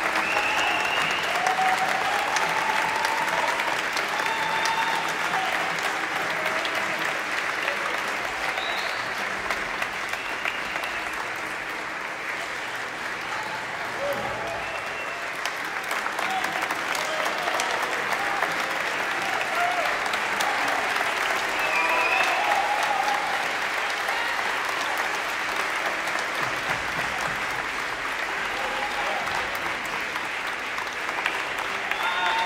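Audience and performers applauding steadily without a break, with voices calling out here and there over the clapping.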